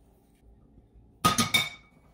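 Stainless steel cookware clinking together: two quick metallic clatters a little over a second in, the second one ringing on briefly.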